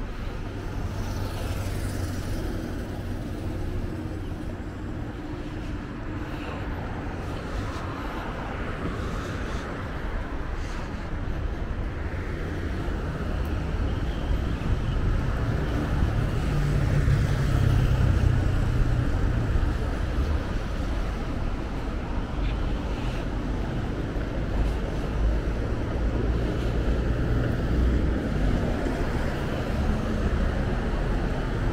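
Road traffic on a multi-lane city street: a steady hum of car engines and tyres, with the low rumble of passing vehicles growing louder about halfway through.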